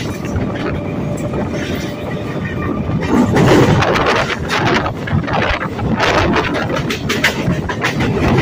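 Passenger train running at speed, heard from an open coach door: steady wheel-on-rail rumble with rushing air. From about three seconds in it grows louder, with a quick series of clacks as the wheels run over the junction's points and crossings.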